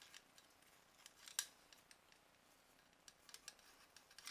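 Faint metallic scraping and clicking of a 20-gauge bore brush worked around inside an AR-15's chamber, with one sharper click about a third of the way in.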